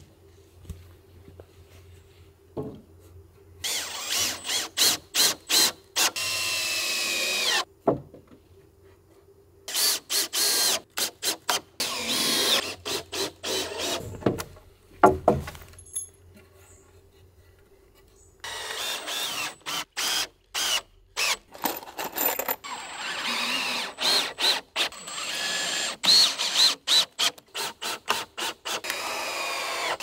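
Cordless drill driving screws into timber in repeated short bursts, its motor whine rising and falling with each pull of the trigger, with lulls between runs and a quiet first few seconds.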